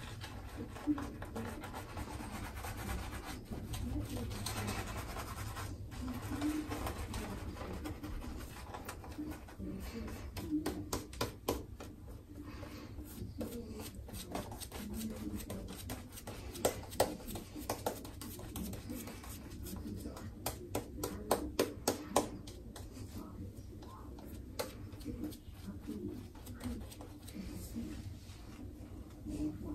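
Semogue Owners Club boar-bristle shaving brush working lather over a freshly shaved scalp: soft, scratchy brushing strokes, with clusters of sharp clicks around the middle and later on.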